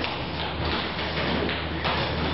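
A wooden chair being carried and set down on a floor: a few knocks and thuds of its legs, the firmest near the end.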